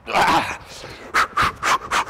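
A fast bowler's run-up: a hard breath out as he sets off, then quick running steps on artificial turf, about four a second, with heavy breathing.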